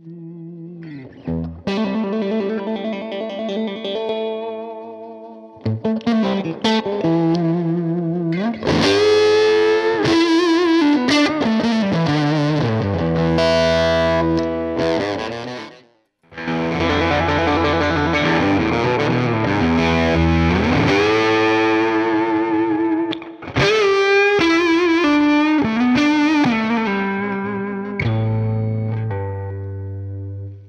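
Electric guitar played through an AnalogMan Sun Face BC183 fuzz pedal into a Universal Audio OX amp top box: fuzzy lead lines with string bends, chords and held notes. The playing cuts off abruptly about halfway through and starts again straight away.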